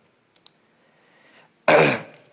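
A man coughs once, sharply, near the end, after a couple of faint mouth clicks and a soft breath in.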